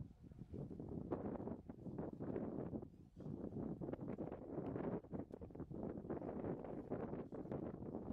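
Wind buffeting the camera's microphone, an uneven rushing noise that rises and falls in gusts.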